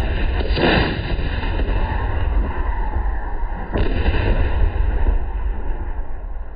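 A towed howitzer firing a rocket-assisted projectile: the sharp report right at the start, then a heavy low rumble rolling on for several seconds. A second sharp crack comes a little under four seconds in.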